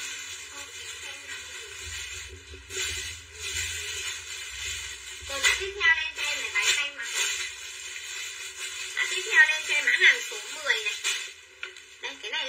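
Indistinct speech in a small room, in spells, loudest near the middle and toward the end.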